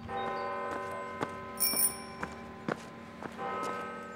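Bells ringing with a long, steady ring, and a brief bright higher ring about one and a half seconds in. Footsteps on stone paving click about twice a second.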